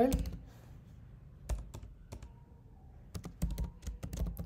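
Typing on a computer keyboard: a few separate keystrokes, then a quick run of several keys near the end.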